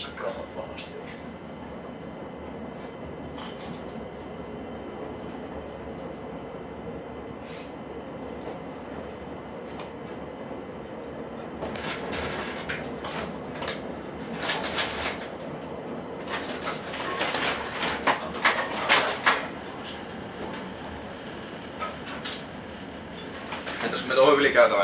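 Cab interior of a VR Dm7 diesel railcar rolling slowly on a rough, grass-grown branch line: the diesel engine and running gear make a steady drone. From about halfway through, a run of clattering and rattling knocks comes in for several seconds.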